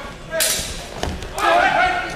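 Sharp hits as two HEMA fencers clash: one about half a second in and two more just past a second, then voices calling out.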